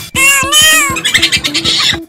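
A short cat-like meow sound effect, wavering in pitch for about a second, laid over background music with a steady beat.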